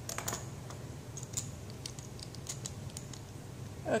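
Black plastic screw cap being twisted onto a small glass test vial, a scatter of faint, irregular clicks and ticks.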